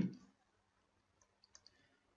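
A few faint, short clicks about one and a half seconds in, a stylus tapping on a graphics tablet while writing; otherwise near silence after the tail of a spoken word at the start.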